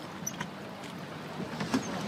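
Water splashing and lapping as a wooden rowboat is rowed, with a few faint light clicks.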